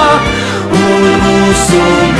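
Music: the closing bars of a Latvian pop song, held chords with no lead vocal line.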